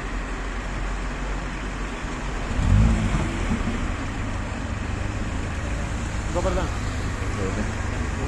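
City street traffic noise with a steady low engine rumble, swelling briefly louder about three seconds in; brief voices near the end.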